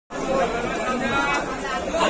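Several people talking at once: steady, overlapping market chatter with no single clear voice.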